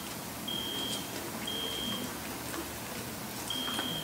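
An alarm sound effect played very quietly through a phone's speaker: a single high-pitched beep, each just over half a second long, repeating about once a second with one longer gap near the middle.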